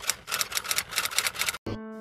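Typewriter keystroke sound effect, a fast run of sharp clicks that stops about one and a half seconds in, followed by a short steady low tone.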